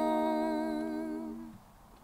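Voices holding a long sung note in harmony, with vibrato, fading out about three-quarters of the way through and leaving near silence.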